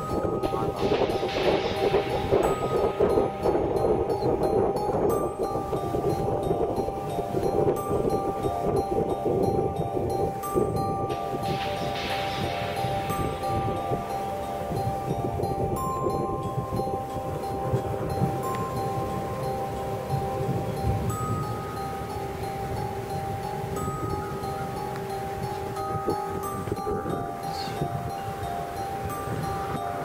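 Gusting storm wind, swelling about a second in and again around twelve seconds, with several sustained ringing tones at different pitches coming and going over it.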